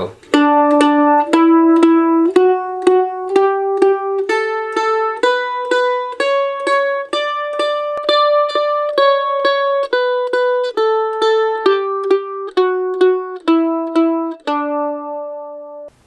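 Mandolin played with a pick: a one-octave D major scale in alternating down-up strokes, each note picked twice, rising from D to the D an octave above and back down, ending on a held low D.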